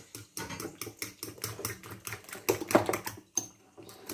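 Metal fork beating raw eggs in a ceramic bowl: quick clicks of the fork against the bowl, several a second, with a brief pause near the end.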